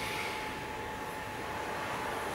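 Steady background noise of a small room, a pause with no talk, carrying a thin, steady high whine.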